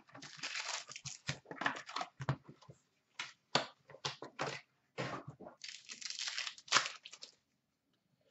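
Hands opening a box of Upper Deck SPx hockey cards and tearing into a card pack: the plastic wrappers crinkle and tear in short, irregular crackles that die away near the end.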